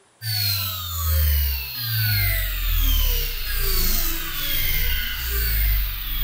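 Synthesized electronic pop music starts suddenly just after the start. A deep synth bass line changes notes under repeated falling synth sweeps.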